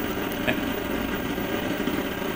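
A low, steady rumbling noise, swelled up and holding, which is heard as an interruption of the transmission.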